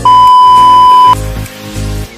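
A loud, steady, high electronic test-tone beep, as played with a TV colour-bars test card, lasting about a second and cutting off suddenly, over background music with a repeating bass line.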